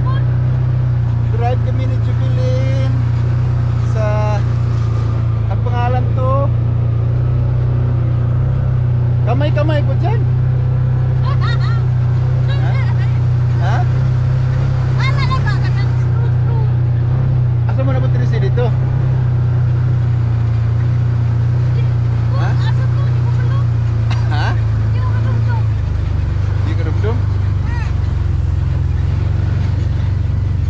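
Side-by-side UTV engine running with a steady drone while driving, its note changing about 26 seconds in.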